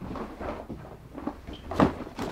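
Rummaging and handling noises: a few short rustles and knocks as fly-tying tools and materials are shifted about while searching for a dubbing loop twister, the sharpest near the end.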